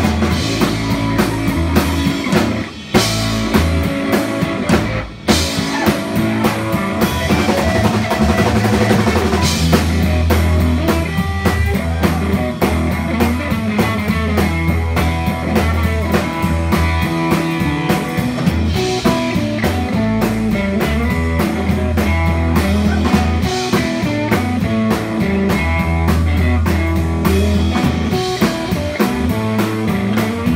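A live rock band plays an instrumental passage on electric guitars and a drum kit, with a steady driving beat. The band makes two brief stops, about three and five seconds in.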